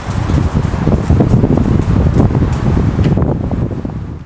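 Wind buffeting the microphone: a loud, low rumble that swells and dips in gusts.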